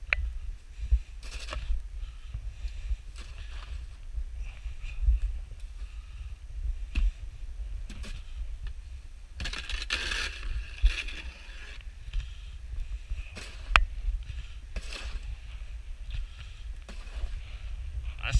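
Wind buffeting the microphone as a steady low rumble, with scattered crunching and scraping in deep snow, busiest around ten seconds in.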